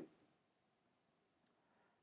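Near silence with two faint, short clicks, about a second and a second and a half in.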